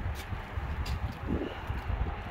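Low, steady outdoor rumble with wind on the microphone, a few faint clicks, and a soft brief rustle about two-thirds of the way in.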